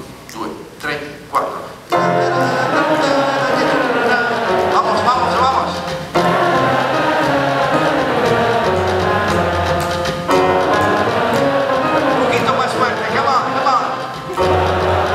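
A few spoken words, then about two seconds in live music starts abruptly: a jazz group with a singing voice, going in phrases that break off briefly twice.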